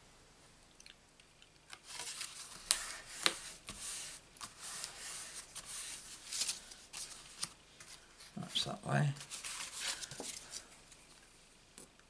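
Cardstock cards being handled, folded and slid across a paper craft mat: scattered rustles, scrapes and light taps of paper, busiest in the first half.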